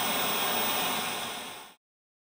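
Television static sound effect, a steady hiss of white noise that fades away and stops about a second and a half in.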